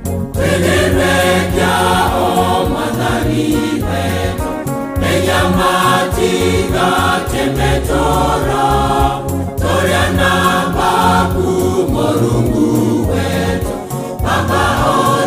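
A church choir singing a gospel song in several-part harmony over sustained low bass notes, in phrases with short breaks about five and nine seconds in.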